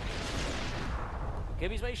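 Editing sound effect for a graphic transition: a sudden rush of noise that dies away over about a second and a half, its hiss fading first, as the background music stops. A man starts speaking near the end.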